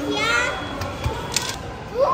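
Children's voices in a busy hall: a short high-pitched child's exclamation at the start, then background chatter with a couple of light clicks.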